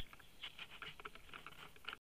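Faint, irregular rustling and crackling of dry hay and straw as a person moves right up against hay bales.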